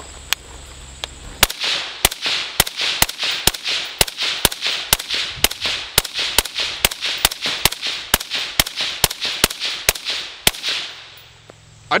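Suppressed Steyr AUG bullpup rifle fired rapidly in semi-auto: about thirty shots at roughly three a second, each with a short echo, starting about a second and a half in and stopping near the end.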